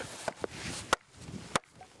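Firewood being split with an axe on a chopping block: two sharp strikes about two-thirds of a second apart, in the second half.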